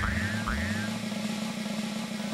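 Springy bouncing sound effects for a big rubber ball bouncing: two quick rising-and-falling tones, each with a soft low thump, in the first half second. Then a steady low hum with hiss.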